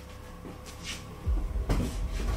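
Faint rustling of cloth, then low thumps and knocks from about a second and a quarter in as a person sits down at a table.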